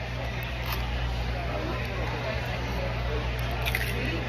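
Chewing liquid-nitrogen-frozen cereal balls, with a short breath blown out near the end that carries the cold vapor. Behind it is the steady low hum and faint voices of a busy indoor hall.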